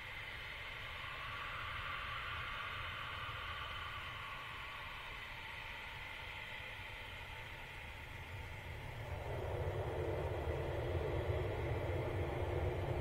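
Distant Eurofighter Typhoon jet engines running, a steady rushing sound. About nine seconds in it grows louder and deeper as an afterburner take-off begins.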